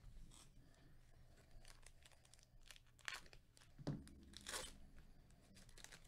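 Faint crinkling and tearing of a foil trading-card pack wrapper being ripped open by hand. There are a few louder rips about three seconds and about four and a half seconds in.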